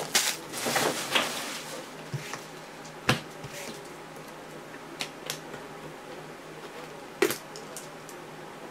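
Handling noise at a card-breaking table: a brief rustle in the first second, then a few scattered sharp clicks and taps of hard objects, one about three seconds in, a close pair about five seconds in, and one near the end.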